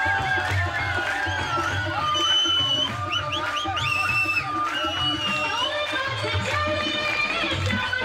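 Live Punjabi folk music: an ornamented melody full of quick pitch bends over a steady, repeating drum beat.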